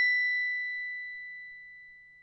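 The ringing tail of a single bell-like 'ding' sound effect from a subscribe-button animation: one clear high tone with a fainter overtone above it, fading away steadily.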